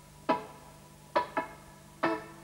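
Electric guitar strummed with the fretting hand resting lightly on the strings: short, muted, percussive chops with no notes ringing out. This is the damped reggae 'skank' chop. There is one stroke about a third of a second in, then two in quick succession, like a double stroke.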